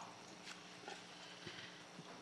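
Near silence: faint room tone with a few soft taps.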